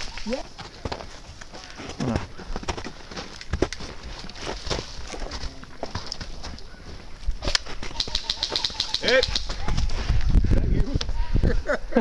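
Footsteps crunching through snow and dry leaves, with scattered clicks. About two-thirds of the way in, an airsoft gun fires a quick burst: about a dozen sharp clicks at roughly eight a second.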